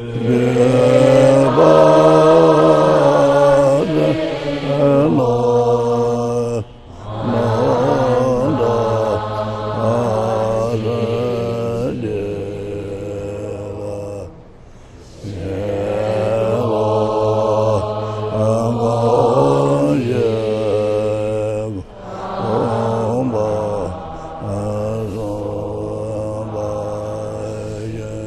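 Buddhist congregation chanting a supplication prayer to the lineage teachers in unison. The chant moves in long held phrases of about seven seconds, with a brief pause for breath between each.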